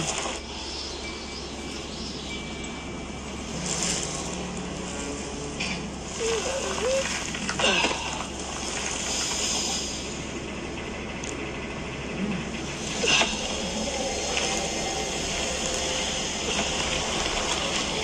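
The music video's soundtrack playing in the room: a steady, noisy cinematic ambience rather than a song. It has a few brief, sharp swells, the loudest about eight and thirteen seconds in.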